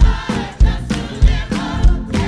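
Gospel choir singing over a steady low beat that falls a little under twice a second.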